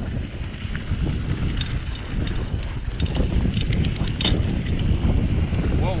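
Mountain bike rolling fast down a dirt trail: wind buffeting the camera's microphone and the tyres rumbling over the ground, with scattered clicks and rattles from the bike over rough spots. A short shout of "whoa" comes at the very end.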